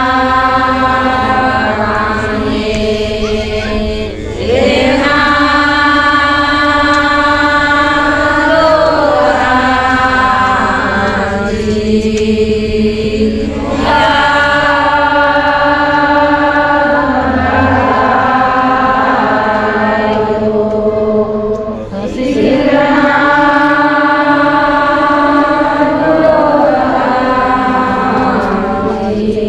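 A large group of women chanting a prayer in unison, unaccompanied, in long held phrases that break briefly about every nine seconds.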